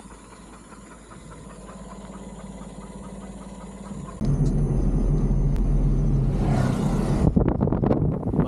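Suzuki S-Presso's small three-cylinder engine idling quietly with a steady low hum. About four seconds in, the sound changes suddenly to the loud, steady rumble of the car driving along the road. Gusty wind buffets the microphone near the end.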